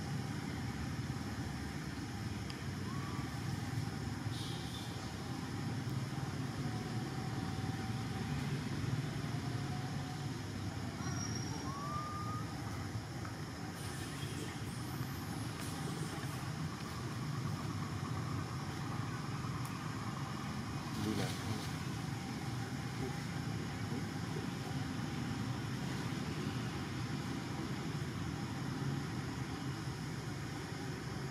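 Steady low rumble of background noise, with a few faint short chirps over it.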